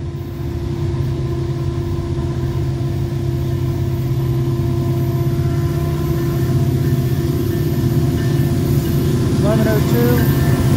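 Diesel locomotives at the head of a freight train approaching. It is a steady low engine drone that grows steadily louder as the lead units draw near and pass close by.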